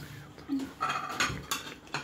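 Crockery being handled on a dining table: a plate picked up and set against other dishes, giving a few sharp clinks in the second half.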